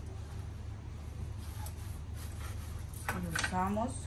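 A knife cutting through a lemon on a plastic cutting board, heard as a few faint short strokes over a steady low hum. Near the end, a brief voice sound with a rising pitch is louder than the cutting.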